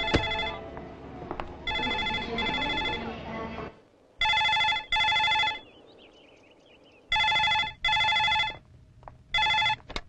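Telephone ringing in the double-ring pattern, a pair of rings repeating about every three seconds. It stops after a single ring near the end as the handset of the landline desk phone is lifted.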